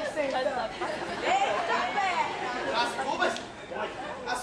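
Speech: actors' voices talking on a stage, with pitch rising and falling across the whole stretch.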